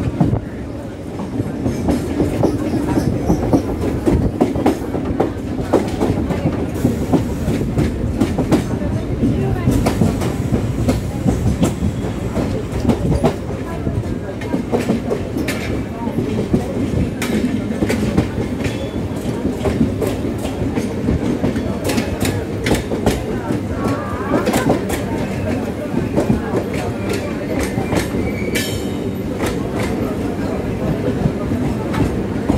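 Indian suburban EMU local train rolling slowly, its wheels clattering over rail joints and crossover points, heard from the open doorway with the express running alongside. A brief high screech comes near the end.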